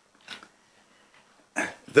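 A pause in a man's speech at a desk microphone: a short breath about a third of a second in, then he starts speaking again near the end.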